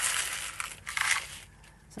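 Small green scrap-glass shards tipped out of a plastic tub onto paper, a crunching, rattling pour that swells about a second in and dies away about a second and a half in.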